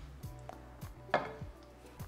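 A few light knocks and clinks, the loudest just past the middle, as a metal springform cake pan is set down on a glass cake stand.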